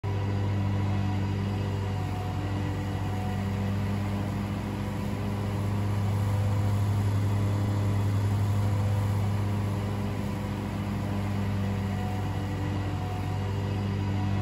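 Zero-turn riding mower running steadily while cutting thick grass: a constant engine-and-blade drone with a low hum, growing a little louder midway as the mower passes close.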